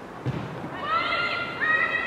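A thump about a quarter second in, then a loud, high-pitched shout that rises and holds, overlapped by a second call near the end, from players in the goalmouth scramble.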